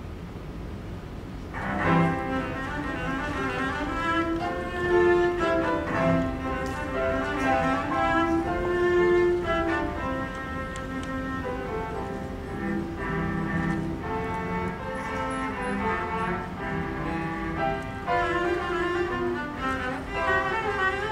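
Cello begins playing a classical piece about a second and a half in, with piano accompaniment, after a moment of quiet hall noise.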